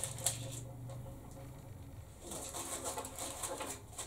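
Faint handling sounds, light rustling and a few small clicks, as a plastic-wrapped part is turned over in the hands, over a low steady hum.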